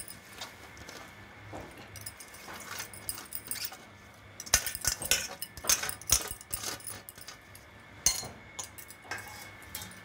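Steel utensils clinking and knocking against a pressure cooker as chopped greens are tipped in from a perforated steel plate: scattered light clicks, busiest around the middle.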